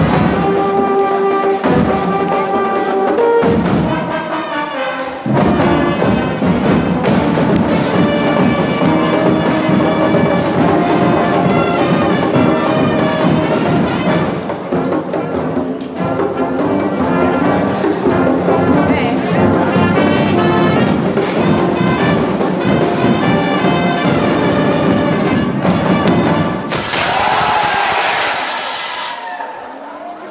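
School marching band playing: trumpets, trombones and baritone horns in full ensemble over drums, with sharp accented hits and short breaks in the first few seconds before the band plays on steadily. Near the end the music gives way to a loud hiss-like burst of noise lasting two or three seconds.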